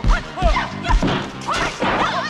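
Film fight-scene soundtrack: sharp punch and kick impact effects land about four times over the background score, with short high cries between the blows.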